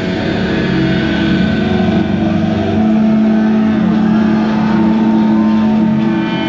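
Distorted electric guitars and bass of a death metal band holding ringing chords as a song ends. A low sustained note swells louder about three seconds in and holds.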